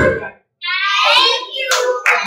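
Dance music stops abruptly, then after a short gap a child's high-pitched voice calls out, with a few hand claps near the end.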